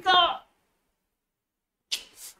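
An excited voice trails off, then the sound track drops to complete silence for about a second and a half. A short, sharp, hissy burst comes near the end, likely a gasp or intake of breath.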